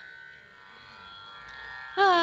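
Quiet lull in Carnatic music: a veena string note rings on and slowly fades. A loud, gliding melodic phrase starts right at the end.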